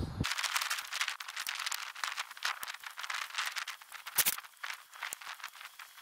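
Dense crackling and small clicks of hands working tomato seedlings into potting compost in thin plastic pot trays, with one sharper click about four seconds in.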